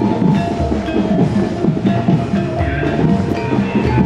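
Gamelan-style music: ringing pitched metal percussion playing a dense run of notes over repeated deep drum strokes.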